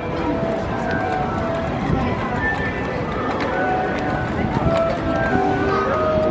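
Outdoor amusement-park din: a steady noisy background of indistinct voices and ride noise, with music in short held notes at changing pitches.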